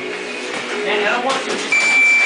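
Indistinct voices in a boxing gym. Near the end a steady, high electronic beep begins, typical of a boxing gym's round timer signalling.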